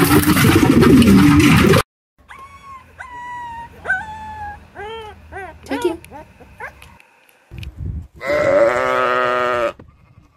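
A flock of pigeons flying up in a loud rush of wingbeats for nearly two seconds, then a dog whining in a string of high whimpers and yips, then a sheep giving one long wavering bleat near the end.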